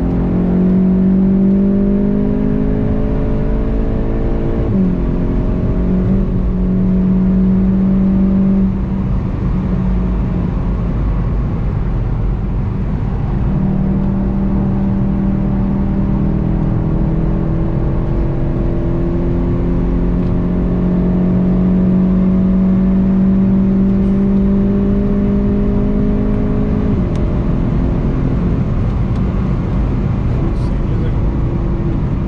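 Golf 7.5 GTI TCR's turbocharged 2.0-litre four-cylinder engine heard from inside the cabin under hard acceleration, its pitch climbing through the gears with an upshift about five seconds in. The engine note falls back under the tyre and road noise from about nine to thirteen seconds, then comes back in a long, slowly rising pull that ends in another upshift near the end.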